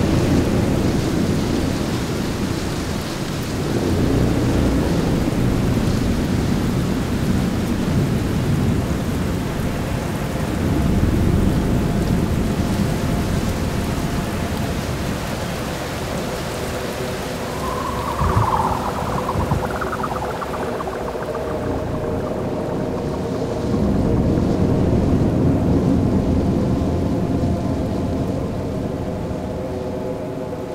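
Designed ambient soundscape of deep thunder-like rumbles and rain-like hiss, swelling and ebbing in slow waves. A short high warble sounds just past the middle, and steady held drone tones come in over the last third.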